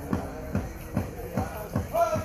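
Pow wow drum struck in a steady beat, about two and a half strokes a second, with voices singing over it; the singing grows stronger near the end.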